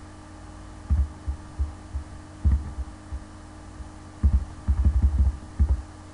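Irregular dull low thumps over a steady low electrical hum, with a quick run of thumps about four to five seconds in.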